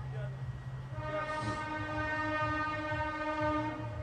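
A single steady pitched tone, rich in overtones, held for about three seconds from about a second in, over a continuous low hum.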